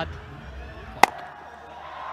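Ground ambience on a cricket broadcast: a steady low hum under a faint haze of background noise, broken by one sharp click about a second in, after which the hum stops.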